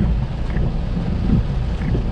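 Rain falling on a car's roof and windscreen, heard from inside the cabin as a steady hiss over a constant low rumble.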